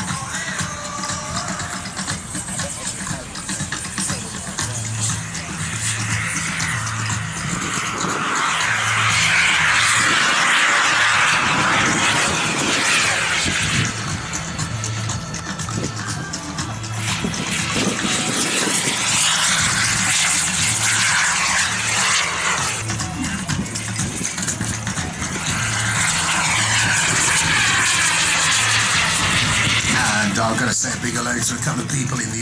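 Radio-controlled model jet flying passes, its rushing noise swelling and fading three times as it goes by. Background music with a steady beat plays underneath.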